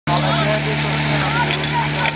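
Portable fire pump's engine running steadily, with high voices calling over it.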